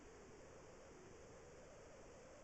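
Near silence: a faint, steady hiss of room tone with nothing happening.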